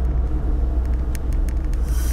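Steady low rumble of a moving car heard from inside the cabin: engine and road noise. There are a few faint clicks and a short breathy hiss near the end.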